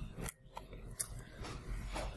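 Faint background room noise with two brief clicks, the sharper and louder one about a second in.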